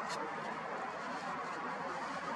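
Steady background hiss with no distinct event.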